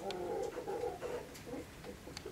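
A bird's low call on a steady pitch, lasting about a second, followed by a shorter, fainter note.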